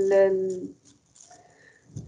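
A speaker's voice holds a long drawn-out hesitation vowel that ends under a second in, then near silence with only faint room noise.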